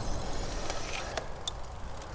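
A steady low rumble of wind on the microphone and tyre noise from a road bike rolling along a paved path, with a couple of faint clicks a little past a second in.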